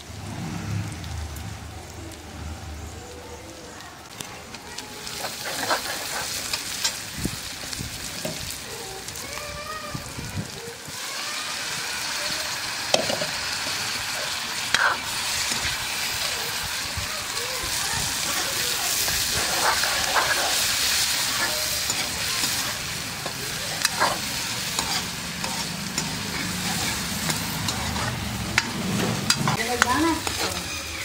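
Chopped onions and tomatoes sizzling in oil in a steel kadai over a wood fire, with a metal ladle scraping and clinking against the pan as they are stirred. The sizzle grows louder about a third of the way in.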